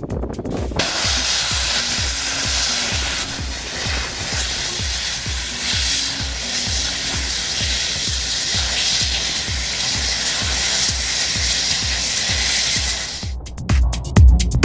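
Steady hiss of a high-pressure hydrocarbon release burning as a jet fire. It starts about a second in and cuts off shortly before the end. The regular beat of electronic music runs underneath.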